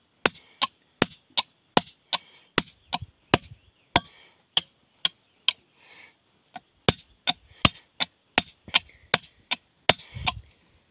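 Steady hand-hammer blows on a large stone slab, about three sharp strikes a second, with a short pause about halfway through: stone being worked along a split.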